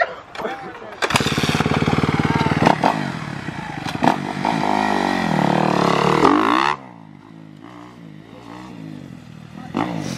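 Kawasaki KX250F single-cylinder four-stroke dirt bike engine revving hard close by, its pitch rising and falling as the rider accelerates away. About seven seconds in, it drops off abruptly to a faint, distant engine sound.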